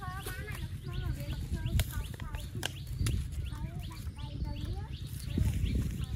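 Several people talking in the background, their voices overlapping, with a few sharp clicks and a steady low rumble underneath.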